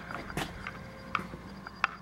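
Quiet room sound with a faint steady hum and three sharp, light clicks spread a little under a second apart, from a person moving about while carrying a handheld camera.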